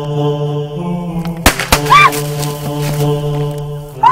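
Two gunshots about a quarter of a second apart, about a second and a half in, over a steady droning music score. A short cry follows right after the shots.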